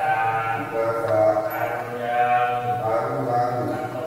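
Buddhist monks chanting in Pali, male voices sung on long held notes that step up and down in a slow, continuous recitation.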